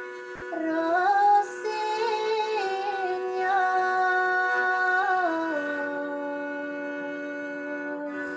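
A bowed string instrument, held upright on the lap, plays a slow, wavering melody over a sustained drone string, with a woman's voice singing along.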